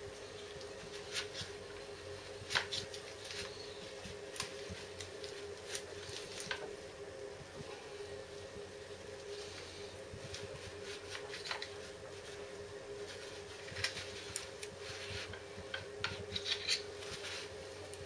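Light clicks, taps and short scrapes of a screwdriver and tissue being worked around a motorcycle brake caliper as its pistons are cleaned, spaced irregularly every second or two, over a steady low hum.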